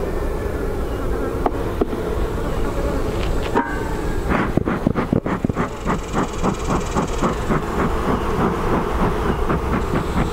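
Bellows of a beekeeper's smoker being pumped in a quick run of puffs, about three a second, starting around four seconds in and blowing smoke over an open hive. Honeybees buzz steadily underneath.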